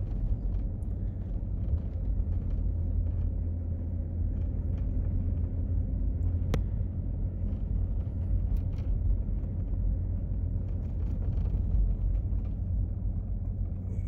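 Steady low rumble of a car driving on a snow-packed road, heard from inside the cabin, with a single sharp click about halfway through.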